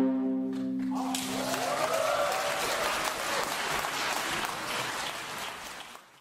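The final held chord of a viola ensemble dies away, and audience applause breaks out about a second in, fading out near the end.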